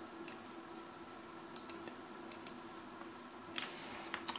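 Faint single computer mouse clicks, about half a dozen scattered through, over a low steady hum.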